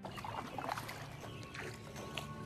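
A paddle dipping into and pulling through water, with soft music tones coming in underneath about a second in.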